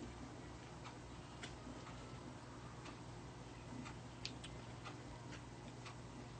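Faint room tone with a steady low hum and light, irregularly spaced clicks.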